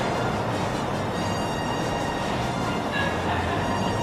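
Steady outdoor background noise: an even low rumble with a faint hiss above it, with no sudden events.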